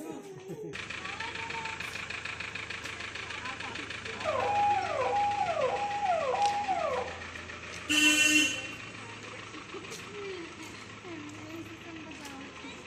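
A Mahindra Scorpio SUV running as it pulls away, its engine a steady hum. A falling electronic tone repeats four times in a row, and a short, loud car-horn toot sounds about eight seconds in.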